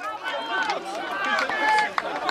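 Several men's voices shouting and calling out at once, cheering a goal, with scattered sharp smacks among them.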